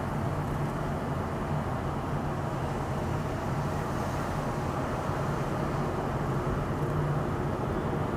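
Steady road and engine noise of a car driving in city traffic, heard from inside the cabin through a dashcam microphone: an even rumble with a low hum.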